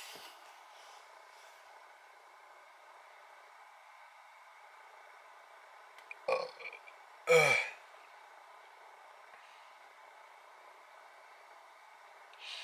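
A man's short, low burp about six seconds in, against a faint steady hum inside a car cabin.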